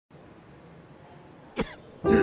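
A man's single short cough about one and a half seconds in, over faint room tone.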